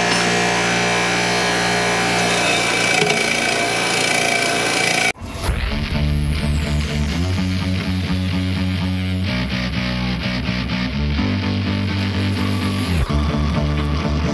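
A bench grinder running with a steady whine for about five seconds. It then cuts off abruptly, and rock music with bass and guitar takes over.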